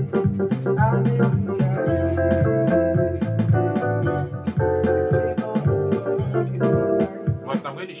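Electronic keyboard played in a contemporary gospel style: held chords over a steady bass line, changing every second or two.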